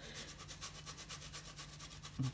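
Faint rasping of a zucchini being rubbed back and forth over a flat handheld metal grater in quick, even strokes. The zucchini is barely shredding: hardly anything is falling into the bowl.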